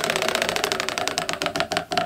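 Tabletop prize wheel spinning, its pointer flapper ticking rapidly against the wheel's pegs, the clicks slowing and spreading out toward the end as the wheel winds down.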